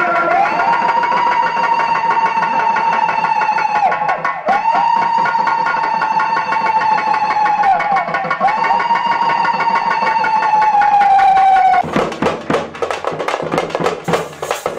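Festival drum band: three long held high notes, each about four seconds, sounding over a steady drum beat. About twelve seconds in, the held notes stop and the frame drums (parai) break into loud, fast drumming.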